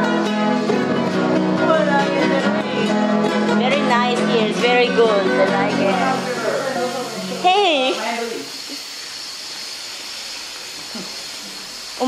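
Ukulele and nylon-string acoustic guitar strummed together in chords, with a voice calling out over the playing. The music stops about seven and a half seconds in, leaving a quieter stretch with a faint steady high hum.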